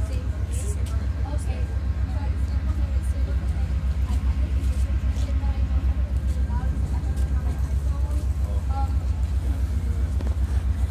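Low, steadily pulsing rumble of the standing train's idling diesel locomotive, a GE P42DC, with faint voices of people on the platform over it.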